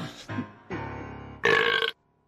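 A cartoon man gulps down a drink, then lets out a loud burp about a second and a half in, over background music.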